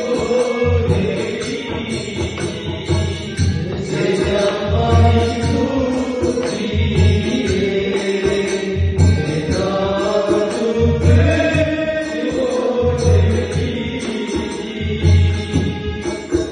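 A man singing a melody through a microphone, accompanied by a rope-laced barrel hand drum (dholak) beating steadily about once a second.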